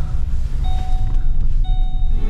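Low, steady rumble of a car's engine and tyres heard inside the cabin while driving, with two steady electronic beeps about a second apart.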